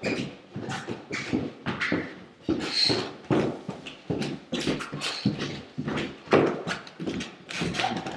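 Footsteps walking down indoor stairs: a run of irregular knocks, roughly two a second, picked up by a laptop's built-in microphone as it is carried.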